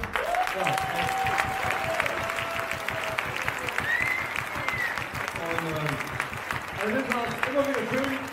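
An audience applauding in a hall, with a few voices over the clapping.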